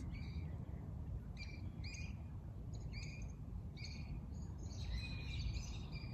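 A bird chirping faintly in the background: short, repeated chirps about once a second, with a busier run of song around five seconds in, over a low steady background hum.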